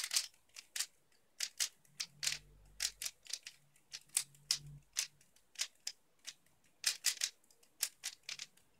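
3x3 speed cube being turned by hand, its layers clicking and clacking in a quick, irregular series of sharp snaps, about two to three a second.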